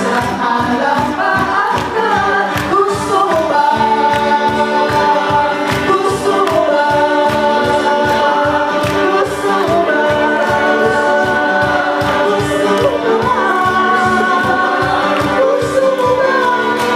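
Male vocal group singing a 90s pop song live in close harmony, several voices at once through amplified microphones, over guitar and a steady beat.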